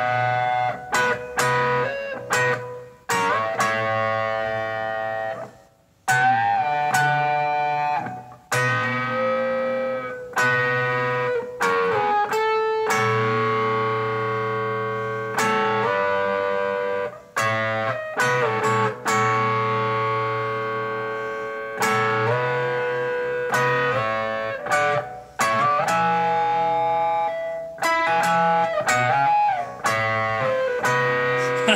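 Solo distorted electric guitar playing slow, sustained notes and chords in a metal style. Each note rings out for a second or more before the next, with a few string bends and a couple of brief breaks.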